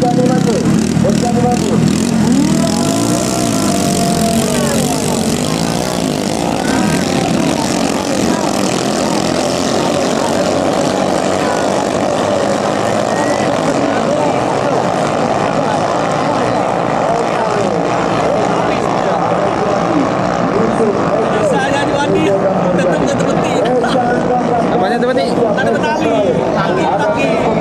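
Several small ketinting longtail boat engines of the 6–7 horsepower class racing at full throttle, blending into a loud, steady buzz whose pitch wavers up and down.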